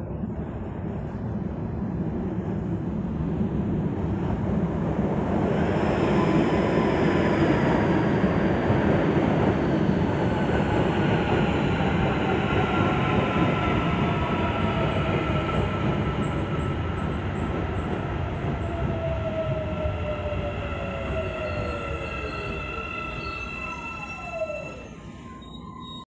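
CPTM series 9500 electric multiple unit pulling into a station and braking to a stop. Its rumble on the rails grows loud as it passes, then eases, under several whining tones that fall steadily in pitch as it slows. The whine drops steeply just before the train halts, about a second before the end.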